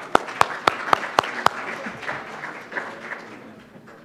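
Audience applause after a speaker is thanked. One set of loud, sharp claps comes about four a second and stops about a second and a half in, and the rest of the applause then dies away.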